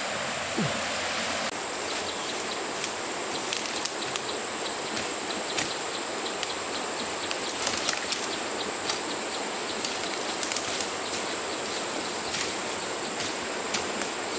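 Steady rush of a flowing river, with frequent short crackling rustles as bundles of cut fern fronds brush through dense fern undergrowth.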